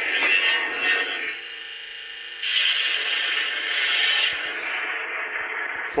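Lightsaber running its Starfall soundfont through the hilt's 24 mm speaker: the blade hum rises and falls as the saber moves. A louder effect sound lasts about two seconds from about two and a half seconds in, with the saber in the mode where moving it triggers blaster effects.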